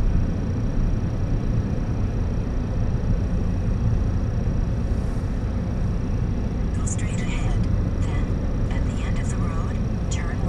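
Steady low rumble of a car's engine and tyres as it rolls slowly across a parking lot, with faint voices in the last few seconds.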